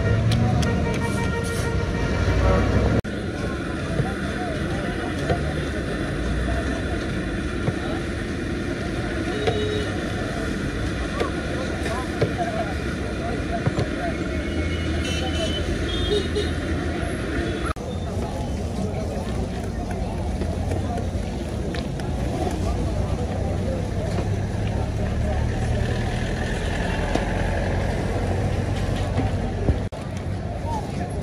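Busy street ambience: traffic going by and people talking, with a steady background noise and scattered small clicks and knocks. The sound changes abruptly about three seconds in and again a little past halfway.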